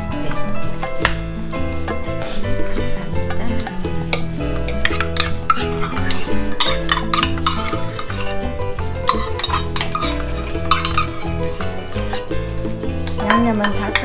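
Metal spoons stirring a wet chopped-vegetable mixture in ceramic mixing bowls, with frequent small clinks and scrapes against the bowl, densest in the middle stretch. This is the seasoning being worked into a meatloaf mix.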